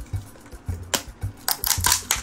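A plastic gashapon capsule being twisted and pried open by hand: a sharp plastic click about halfway through, then a quick cluster of snaps and scrapes near the end as the halves come apart. Background music plays underneath.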